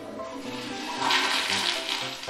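Toilet flushing close up: a rush of water that builds and is loudest from about a second in, with light music underneath.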